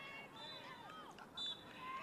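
Faint pitch-side sound of players' voices calling across a football field, with a short faint high tone about one and a half seconds in.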